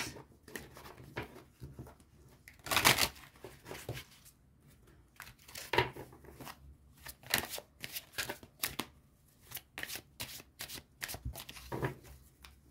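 A deck of oracle cards being shuffled and handled by hand over a table: irregular soft card slaps and swishes, with the longest, loudest stretch of shuffling about three seconds in.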